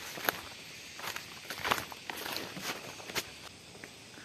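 Footsteps on a leaf-littered forest path, a crunch or scuff every half second or so, irregular in strength.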